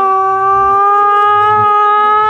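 A single long note, steady in pitch, held for about two and a half seconds. It slides up slightly as it starts and bends at its very end. It is a sound effect in an animated cartoon.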